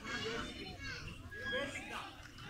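Overlapping voices of a crowd of children chattering and calling out, with no single voice standing out.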